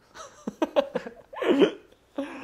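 Two men laughing: a few short bursts, then a louder one about a second and a half in.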